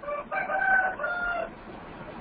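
A pitched animal call in the background, in about three connected parts of fairly steady pitch over a second and a half.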